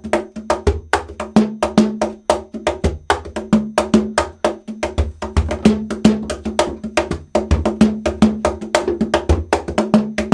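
Cajón, a wooden box drum, played with bare hands in a rumba pattern. It is a steady run of quick strokes, several a second, mixing deep ringing bass tones with sharp slaps.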